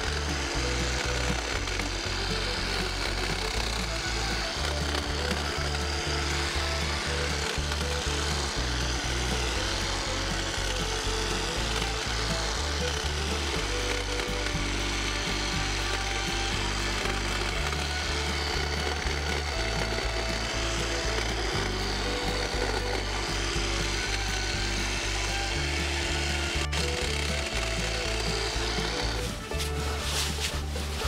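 Toro battery-powered hedge trimmer running steadily, its reciprocating blades cutting through overgrown boxwood. Background music with a bass line changing every second or two is mixed over it.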